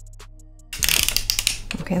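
Erlbacher Gearhart circular sock machine being cranked, a loud, dense metallic clatter of the latch needles running through the cam that starts suddenly about three quarters of a second in and lasts about a second.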